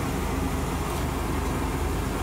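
Double-decker bus running, heard from inside the upper deck as a steady low drone with a broad even rumble over it.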